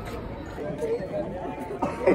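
Indistinct chatter of several people talking nearby, with no clear words.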